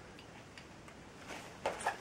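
Quiet room with a few faint clicks and light handling noises, a little louder near the end.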